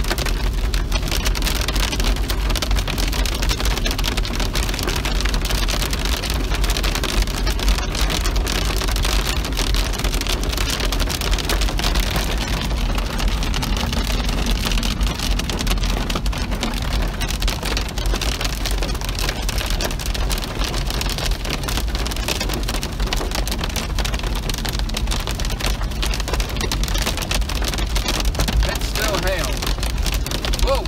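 Heavy rain beating on a moving car's windshield and roof, a dense steady patter over the low rumble of the car on the wet road.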